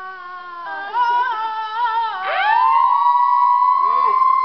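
Long, drawn-out yells held on a pitch almost like singing: a lower, wavering call, then about two seconds in a higher one that slides up and holds on a steady high note.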